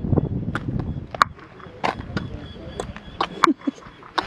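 Sharp hand claps, about eight or nine at uneven spacing, echoing off the long stone walls of Chichen Itza's Great Ball Court, which is known for its repeating echo.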